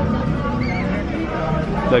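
Background chatter of several people talking, with a short high wavering sound about a third of the way in.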